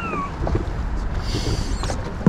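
A person whistling one short falling note that ends just after the start, over low rumbling and handling noise. A brief hiss follows about one and a half seconds in.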